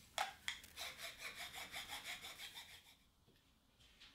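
Quick back-and-forth rubbing strokes of a marking tool on quilt fabric through a plastic template, about five strokes a second, stopping about three seconds in. Two sharp clicks come first as the template is set down.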